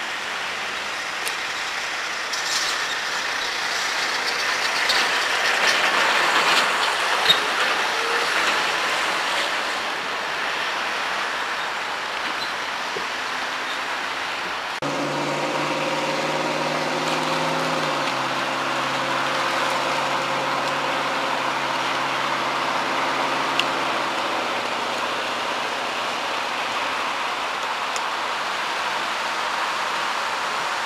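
Outdoor road traffic noise, swelling as a vehicle passes in the first third. About halfway an abrupt cut brings in a steady hum of several notes at once that drops in pitch a few seconds later and stops about three-quarters of the way through.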